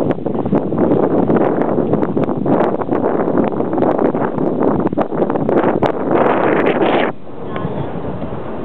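Wind buffeting the camera's microphone: a heavy, gusty rumble with crackling, which drops off abruptly about seven seconds in.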